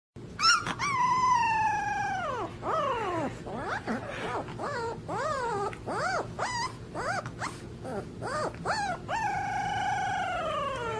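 Puppy howling: a long howl that slides down in pitch at its end, then a run of short rising-and-falling yelps and whines, then another long howl starting near the end.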